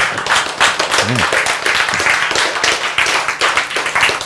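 Audience applauding: many hands clapping in a dense, steady patter, with a brief voice about a second in.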